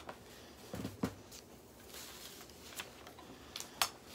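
A sheet of paper being picked up and handled, giving a few short rustles and crinkles, the sharpest near the end.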